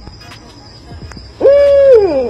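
A long wailing cry starting about one and a half seconds in, held level and then sliding down in pitch, over a faint steady high whine.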